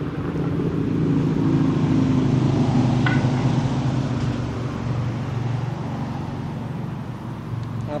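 Road traffic from the adjacent highway: a vehicle's engine and tyres pass by, swelling over the first couple of seconds and fading slowly, loud enough to be called noisier than a Walmart. A brief thin high tone sounds about three seconds in.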